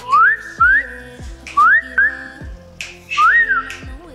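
Five short whistles, each gliding upward, the last rising and then falling, over background music with a steady beat.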